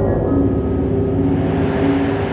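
Steady rushing airliner cockpit noise under a sustained, low music drone.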